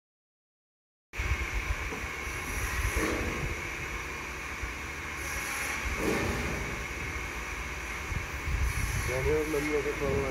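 Wind rushing and buffeting on a handheld phone microphone outdoors, starting abruptly about a second in after silence, with faint voices now and then and a man's voice coming in near the end.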